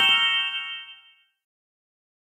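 Rising chime sound effect: a quick run of bright, bell-like notes climbing in pitch, ringing together and fading out a little over a second in.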